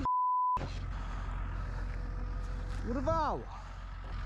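A censor bleep, a steady 1 kHz tone, for about half a second. Then the steady low rumble of a vehicle on the move, with a man's short shout rising and falling in pitch about three seconds in.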